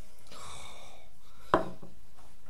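A microphone stand's boom arm being handled and adjusted: a brief rubbing rustle, then a single sharp knock about one and a half seconds in.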